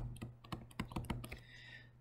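Pen stylus tapping on a tablet screen while handwriting, a quick irregular run of light clicks.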